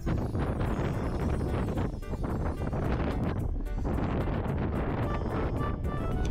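Strong, gusty sea wind buffeting the microphone, with background music playing underneath.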